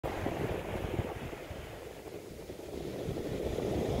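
Wind buffeting the microphone: a low, uneven rumble that eases about halfway through and builds again near the end.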